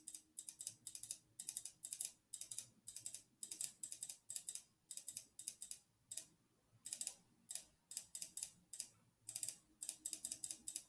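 Repeated clicking of a computer's pointer button, each click stamping the digital brush. The clicks come in quick clusters two or three times a second, with a short pause about six seconds in.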